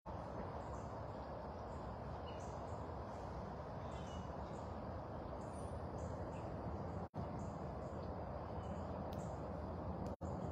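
Outdoor ambience: a steady background hiss with faint, short, high chirps scattered through it. The sound cuts out for an instant about seven seconds in.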